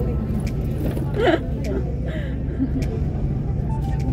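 Steady low drone of engine and road noise heard inside a moving vehicle cruising along a highway, with a brief voice about a second in.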